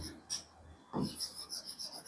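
Faint scratching and tapping of a stylus writing on the glass face of an interactive display panel, with quick strokes through the second half. Two brief, duller low sounds come about a third of a second and a second in.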